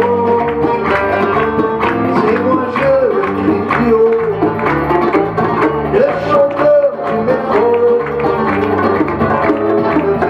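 Live band playing an instrumental break of a Berber-fusion song: an electric guitar lead line with bent, sliding notes over strummed guitar, bass and hand drums.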